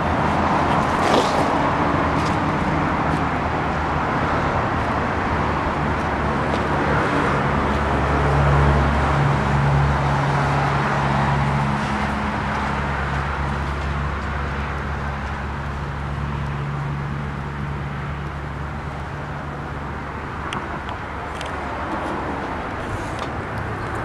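Honda Goldwing GL1500's flat-six engine idling steadily: a low, even hum, fullest about a third of the way in and a little fainter near the end.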